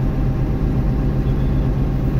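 A bus engine running with a steady low drone, heard from inside the driver's cab.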